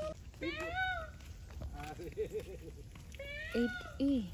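Indian peafowl calling: two long rising-then-falling cries, one about half a second in and another near the end, with a short run of lower, quicker notes between them.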